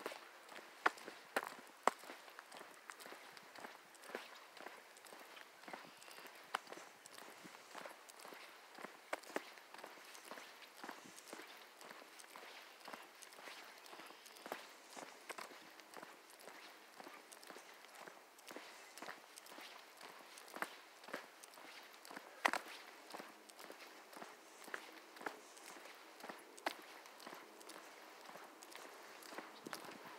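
Faint footsteps on an asphalt path, a steady run of soft footfalls at walking pace, with one sharper tap near the end.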